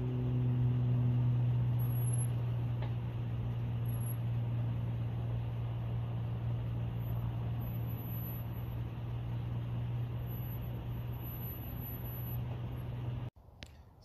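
Nissan Titan's 5.6-litre V8 running steadily with the truck in gear and four-wheel drive, its wheels spinning free off the ground: a constant low hum. The front differential is a mismatched 2.937 ratio against the 3.357 rear. The sound cuts off abruptly near the end.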